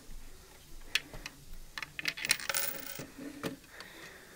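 A coin rattling and jingling through a Lego candy machine's plastic mechanism: a few sharp clicks of Lego parts, then a dense metallic rattle just past the middle, and a last click near the end.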